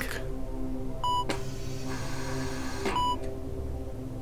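Heart-monitor beep sounding twice, about two seconds apart, each a short pure tone, over a low steady drone.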